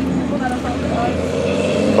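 Steady low engine hum, with faint voices in the background.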